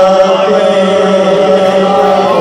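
A man chanting Punjabi devotional poetry (kalam) into a microphone over a PA, holding one long note at a steady pitch.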